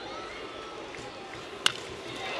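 A single sharp crack of a baseball bat hitting a hard line drive, about a second and a half in, over steady ballpark crowd noise.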